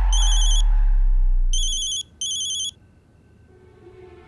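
Mobile phone ringing with a high electronic trilling ring in three short bursts, the last two close together, stopping a little under three seconds in. Under the first rings a deep, low note of background music fades away.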